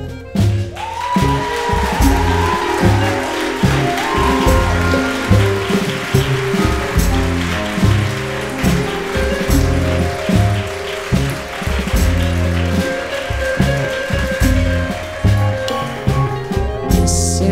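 Live band playing an instrumental passage with no singing: a steady, even drum and bass beat under fuller layers of higher instruments, with a gliding melodic line about a second in.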